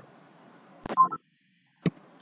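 A sharp click, then a brief electronic beep about a second in, then dead silence and another sharp click near the end, over a faint hiss.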